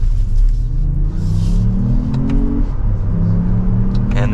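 The 2024 Lexus RX500h's 2.4-litre turbocharged four-cylinder hybrid powertrain accelerating hard from low speed, heard from inside the cabin. The engine note rises, drops sharply about two-thirds of the way through as the six-speed automatic upshifts, then holds at a lower pitch.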